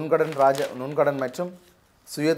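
Speech only: a man reading the news aloud in Tamil, pausing for about half a second near the end.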